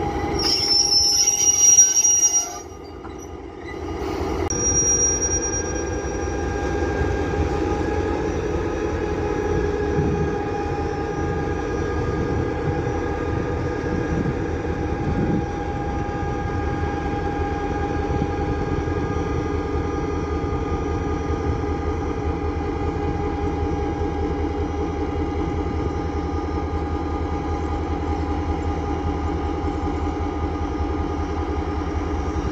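EMD G26C diesel-electric locomotive pulling away, beginning with a loud, high metallic squeal for the first two seconds or so. After a brief dip, its diesel engine runs steadily with a low rumble and a constant whine for the rest of the time.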